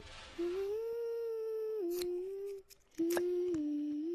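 A voice humming a slow tune in long held notes that step up and down, with a short pause partway through. A few soft clicks sound along with it.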